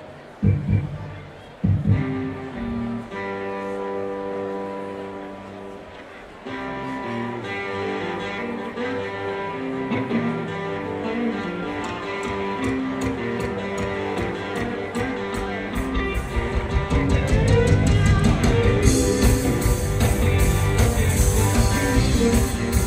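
Live band starting a song with guitar and other string instruments playing held notes. A drum beat comes in about three-quarters of the way through, with cymbals joining shortly after.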